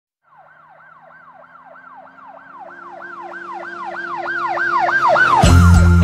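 Song intro: a yelping, siren-like sweep rises and falls about three times a second, fading in steadily over held low notes. Near the end the full band comes in loudly with bass and drums.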